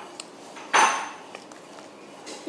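A single sharp clink, like hard dishes or metal knocked together, about three-quarters of a second in, with a short high ringing tail; a faint click comes just before it.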